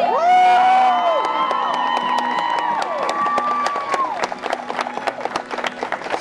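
Wedding guests cheering and clapping as the couple is pronounced husband and wife: several long whooping calls in the first four seconds over steady applause that carries on to the end.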